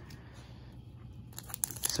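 Foil Pokémon booster pack wrapper crinkling in the hands: a short burst of sharp crackles in the last half second, after a quiet start.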